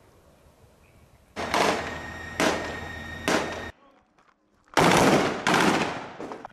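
Gunfire in street combat: three loud reports about a second apart, each trailing off in echo. After a brief gap, two more loud reports come near the end.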